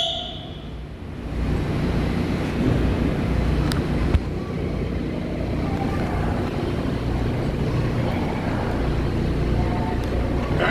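New York City subway train running along the tracks as it pulls out of the station, a steady low rumble that swells after the first second, with a single sharp click about four seconds in.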